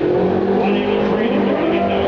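A vehicle engine running at a steady pitch on a drag strip, holding nearly level with slight wavers in pitch.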